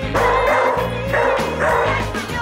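Recorded music playing for a dog freestyle routine, with dog barking sounds over it twice, each lasting under a second.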